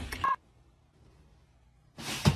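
Women laughing, with a short high tone, cut off abruptly about a third of a second in; then near-total silence, a dead gap between clips.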